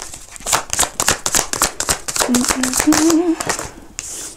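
A deck of oracle cards being shuffled by hand: a rapid run of crisp flicking clicks for about three seconds. A few short hummed notes come in the middle of the shuffle.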